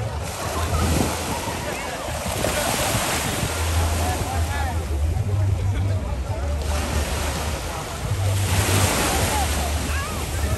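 Ocean surf washing and surging against the shore rocks, swelling about two seconds in and again near the end, with wind buffeting the microphone.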